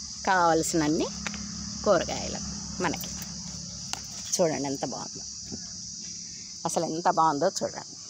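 Insects chirring in a steady, high-pitched drone, with short bursts of a person's speech over it.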